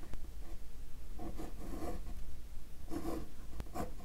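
Uni-ball fine-tip ink pen scratching across textured watercolour paper in several quick drawn strokes, with a couple of light ticks near the end as the pen touches down.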